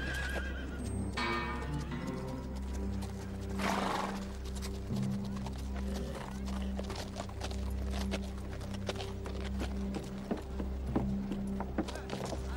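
Horses' hooves clip-clopping at a walk on a dirt street, with a horse whinnying about a second in, over film score music with sustained low notes.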